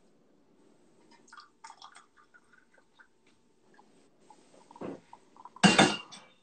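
Kitchenware being handled on a counter: scattered small clinks and taps, a knock about five seconds in, and a loud, brief clatter just before the end.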